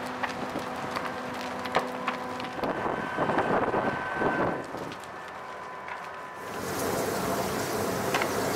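A house burning in a wildfire: a steady rushing noise with scattered crackles and pops. About six seconds in, the sound changes to a brighter, higher hiss.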